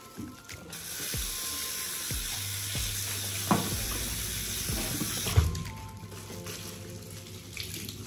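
Bathroom sink mixer tap running into a ceramic washbasin as a cloth is rinsed under the stream; the water starts about a second in and gets quieter after about five seconds. Two sharp knocks come in the middle and near the end of the loud stretch.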